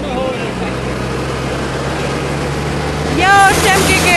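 Bus engine running steadily, heard from inside the moving bus with road noise. A voice calls out briefly about three seconds in.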